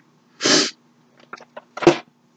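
A man sneezes once, sharply, about half a second in, followed by a few faint clicks and a short breathy sound near the end.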